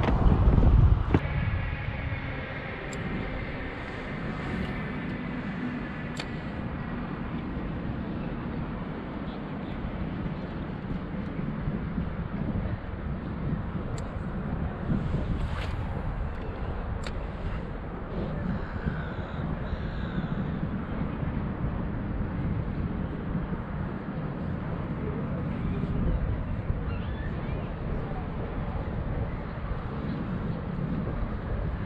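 Steady low rumble of wind buffeting an action camera's microphone out on open water, with a few faint clicks near the middle.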